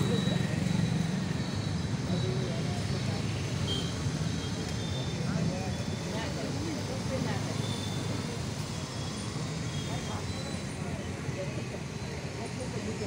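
Slow street traffic with a crowd: vehicle and motorcycle engines running as they pass, under many background voices talking. The low engine hum is strongest in the first few seconds and thins out toward the end.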